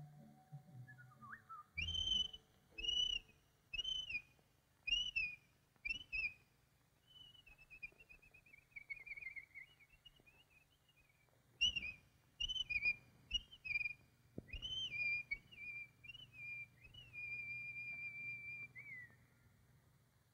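Whistled bird calls on an old cartoon soundtrack. Short arched chirping notes come about once a second, then a falling warbled trill. A second run of calls ends in one long held note that slides down.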